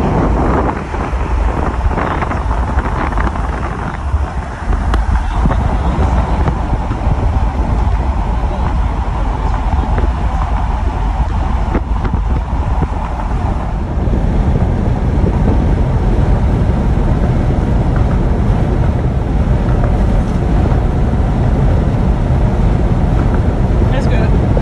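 Car driving at speed, with steady, loud road noise and low wind rumble on the microphone; a little louder from about halfway through.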